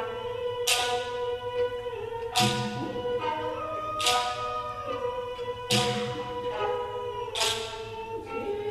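Live Okinawan classical dance music: long held melody notes over a sharp percussive strike that lands regularly, five times, about every second and a half to two seconds.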